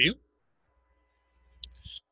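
A single short computer-mouse click about one and a half seconds in, the click that starts a selection box in a CAD program, followed by a brief soft hiss. Otherwise only a faint low hum.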